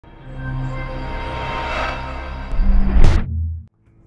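Intro music sting for a channel logo: a sustained chord swells up, then a heavy deep boom with a quick sweep hits about two and a half seconds in and dies away, leaving silence just before the end.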